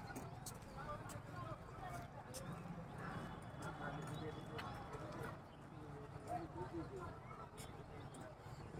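Footsteps on a concrete road: scattered, irregular clicks, faint, with a murmur of distant voices underneath.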